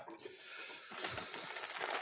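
A person's long, breathy hiss of air through the mouth against the burn of very spicy food, growing slightly louder over about two seconds.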